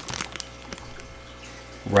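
Faint trickling of water from a plastic livestock bag into a plastic cup, with a few light crinkles and ticks of the bag near the start.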